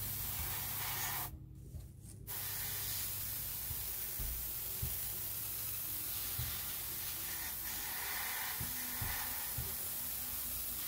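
Airbrush spraying paint with a steady hiss. The spray cuts off for about a second near the start, then resumes.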